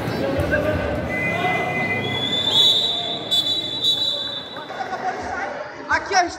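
Crowd chatter in a gym, with a long, shrill whistle held from about two and a half seconds in to about five seconds in, preceded by a fainter, lower whistle tone.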